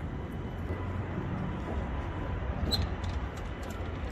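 Steady outdoor urban background noise: an even low rumble with a faint hum, with no distinct event standing out.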